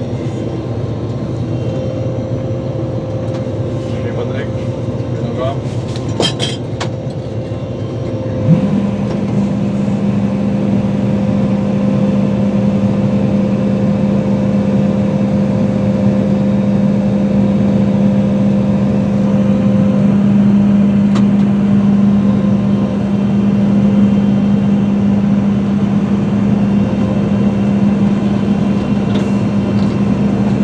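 Claas combine harvester running steadily at work. About eight seconds in, its unloading auger engages with a sudden step up in level and a steady hum that holds as grain is augered out of the tank.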